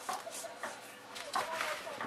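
A hand starting to toss seasoned raw potato chunks in a plastic bowl: a few soft knocks and rustles.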